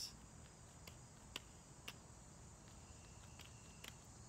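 Near silence with a few faint clicks of juggling balls being caught in the hand. Two come about half a second apart near the middle, and another just before the end.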